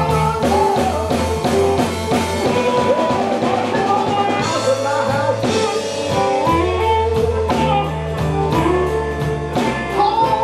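Live electric blues band playing a 12-bar blues in A minor: electric guitars over a drum kit and a steady beat, with bending guitar or vocal lines above.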